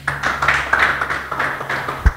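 A congregation clapping their hands in applause, a dense, even patter of many claps, with a low steady hum underneath.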